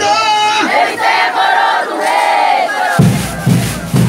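A group of congada singers chanting together in long held notes that rise and fall. Three low thumps follow in the last second.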